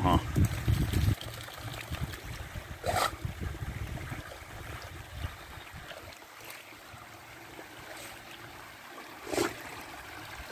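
Water trickling steadily over rocks from a drainage grate, with two short louder sounds about three seconds in and again near the end.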